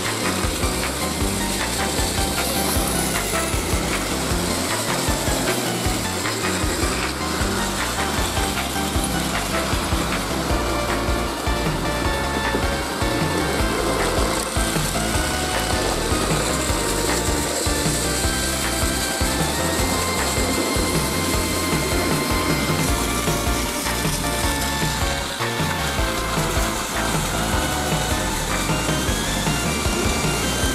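Plarail battery toy train, a customised E721 series model, running on plastic track: a steady whirring of its small motor and gears with the wheels rubbing and rattling along the track, under background music with a melody.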